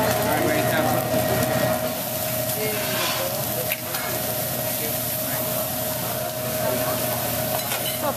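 Eggs sizzling on a hot teppanyaki griddle, a steady hiss. A steady hum runs under it and stops just before the end.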